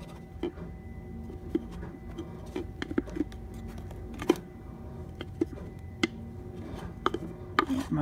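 A round bamboo lid being turned and worked against the notched rim of a bamboo tube, giving scattered light wooden clicks and taps as its tabs catch and line up with the notches. The sharpest tap comes about halfway through.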